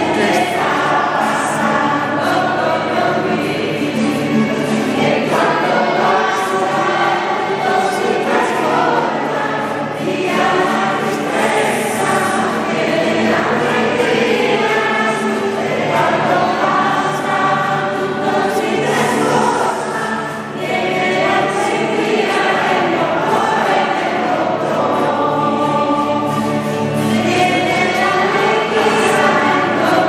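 A congregation singing a hymn together, phrase after phrase with no spoken words.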